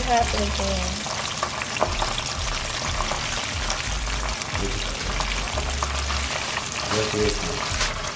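Breaded chicken pieces deep-frying in hot oil in a pan: a steady sizzle full of small crackles and pops.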